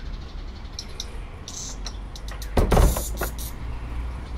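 A double door shutting with one short, loud thud about two and a half seconds in, followed by a couple of light clicks, over a steady low rumble.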